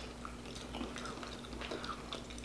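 Quiet chewing with faint, scattered mouth clicks, over a faint steady hum.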